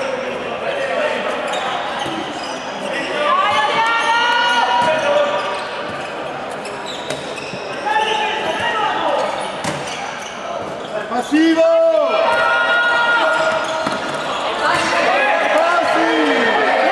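A handball bouncing and thudding on the sports-hall floor during play, echoing in a large hall, with players shouting to each other, loudest in the second half.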